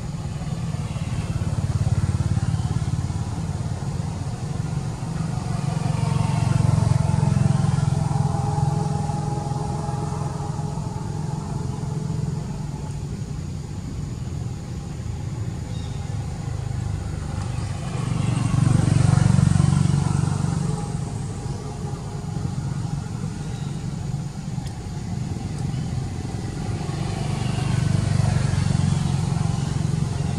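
Motor vehicles passing one after another, their engine noise swelling and fading several times, loudest about two-thirds of the way through.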